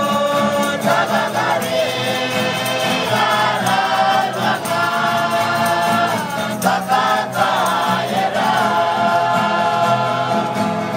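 A village group singing a Christian hymn together in the Lusi language, many voices in unison with held notes, with acoustic guitars strummed along.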